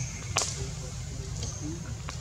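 A single sharp crack, like a snap or whip, about half a second in, over a steady low rumble and faint voices.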